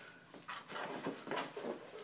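Soft handling noise from a long cardboard shipping box as a wrapped lightsaber blade is slid out of it: a few faint knocks and rustles.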